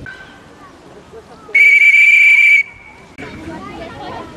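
One loud, steady blast on a plastic whistle, about a second long, starting and stopping abruptly, over faint children's chatter.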